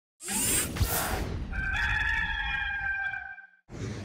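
Intro sound effect: a whoosh with a low thump, then one long rooster crow held for about two seconds that cuts off just before the end.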